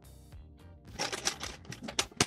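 Faint background music, then, about a second in, cloth and a bag rustling and crinkling as they are handled over an open hardshell guitar case. A sharp click comes at the very end as the case is being closed.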